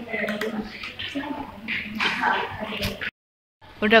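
Indistinct voices talking in the background, with faint gurgling and dripping of liquid and a few light clicks. The sound cuts out completely for about half a second near the end.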